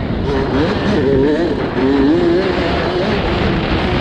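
Youth motocross dirt bike engine heard from on board, its pitch climbing and dropping as the throttle is worked, with a brief dip just before two seconds in, over a constant rush of noise.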